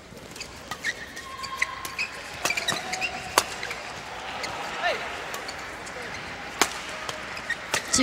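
Shuttlecock struck back and forth by badminton rackets in a fast doubles rally: sharp cracks at irregular intervals, the loudest about three and a half seconds in, with short squeaks of shoes on the court floor and a steady murmur of the hall behind.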